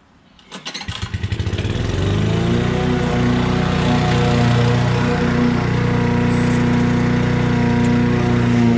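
Honda HRU216D self-propelled lawn mower's four-stroke engine starting up about half a second in, its firing speeding up over a second or so and then running steadily at a constant speed.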